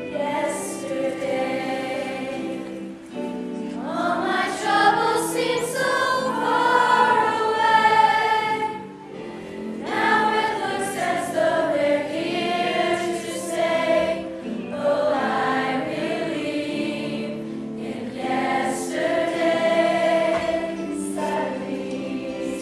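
Mixed high school choir singing in harmony, held chords in phrases of several seconds, with short breaks about three seconds in and near the nine- and fourteen-second marks.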